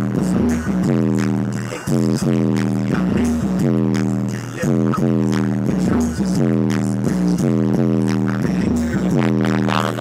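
Loud music with heavy bass playing on a car stereo, heard inside the car's cabin.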